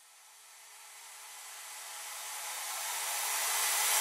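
A hissing noise swell that grows steadily louder, with faint held tones beneath it: the riser that opens a song's backing track, building toward the band's entry.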